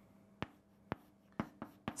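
Chalk writing on a blackboard: about five short, sharp taps and strokes of the chalk against the board.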